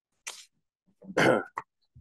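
A person coughing: a short, soft breathy burst, then a louder cough about a second in.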